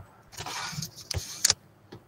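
A short rustling noise, followed by a few sharp clicks close together.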